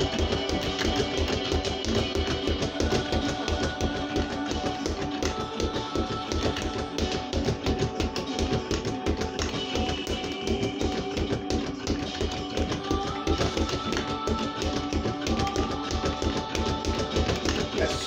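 Leather speed bag struck rapidly and continuously, a dense even rhythm of impacts, over background music with guitar.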